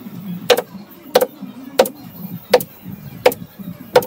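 Pneumatic staple gun fed by an air compressor, firing six sharp shots at an even pace of about one every 0.7 s.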